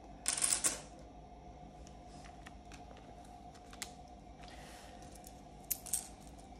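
A short clatter of one-pound coins as a stack is set down on a hard countertop about half a second in, then a few light clicks of coins being handled.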